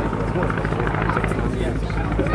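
Boeing P-26 Peashooter's nine-cylinder Pratt & Whitney Wasp radial engine running steadily in flight.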